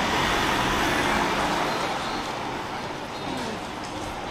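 Street traffic: a motor vehicle passing close by, its noise easing off after the first couple of seconds.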